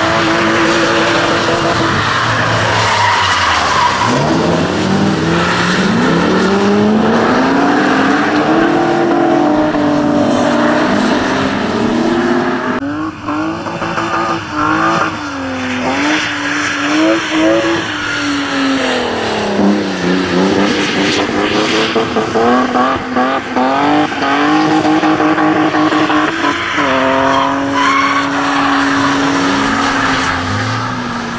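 Drift cars' engines revving up and down again and again through long slides, over tyre noise and skidding on a wet track. The sound changes abruptly about halfway through as another car is heard.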